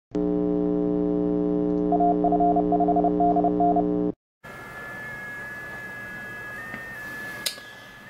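An electronic intro sound: a steady buzzing drone with a higher beeping tone pulsing on and off over it, both cutting off at about four seconds. After a short silence comes shortwave receiver audio, a hiss with a faint steady tone that shifts pitch slightly a few times, and a click near the end.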